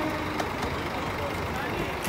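A coach bus's engine idling, a steady low rumble, with people talking faintly around it.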